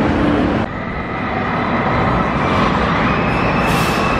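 Steel roller coaster train running along its track: a steady, loud rumble with the echoing din of a large indoor park hall. About half a second in the sound dips and turns duller, and faint steady whines ride on top.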